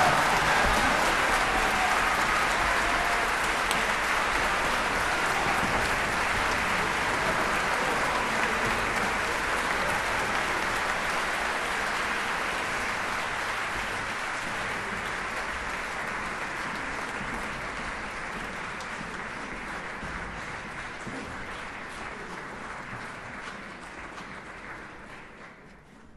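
Audience applause, fading slowly and cut off near the end.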